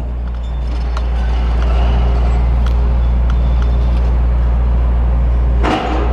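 A heavy demolition machine's engine running steadily: a deep, even rumble with a faint hum above it and a few light clicks.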